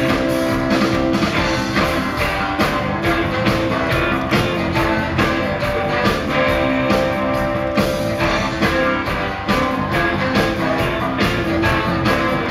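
Live rock band playing an instrumental passage of the song: drum kit and guitars with held notes over a steady beat, no singing.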